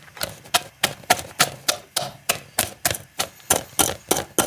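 A small metal utensil tapping and poking in a stainless steel pot of black granular material, a quick, uneven run of sharp clicks about four a second.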